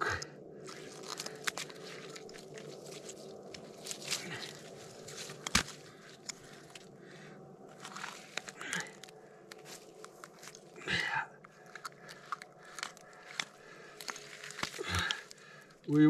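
Snow and slushy ice crunching, with scattered sharp clicks, as hands work a fish free of a gillnet at a hole in the ice.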